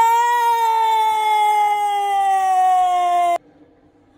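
A woman's voice holding one long, high wordless note that wavers briefly at the start, then slides slowly down in pitch and cuts off suddenly about three and a half seconds in.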